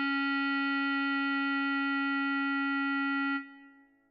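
Bass clarinet holding one long steady note, the whole note in the score. It stops about three and a half seconds in and dies away.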